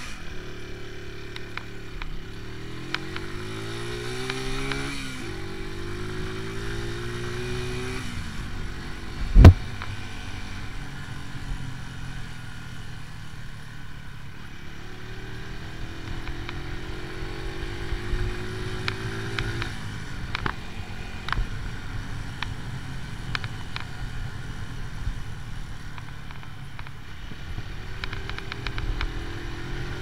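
AJS Tempest Scrambler 125's single-cylinder engine running under way. Its pitch climbs through the gears in the first several seconds, then again past the middle and near the end. A single loud thump about a third of the way in stands out above the engine.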